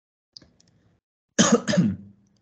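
A person coughing twice in quick succession near the end, after a faint click about half a second in.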